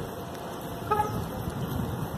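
A brief single car horn toot about a second in, over a steady low rumble of street traffic.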